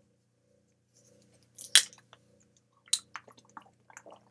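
Small plastic water bottle being handled and its cap twisted open: one sharp plastic crack a little under two seconds in, a second near three seconds, then a few light plastic clicks and crinkles as it is lifted to drink.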